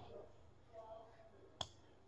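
Near silence: room tone, with a single short click about one and a half seconds in.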